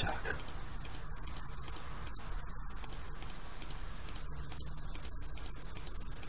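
Steady hiss and low hum of an open microphone, with faint ticking.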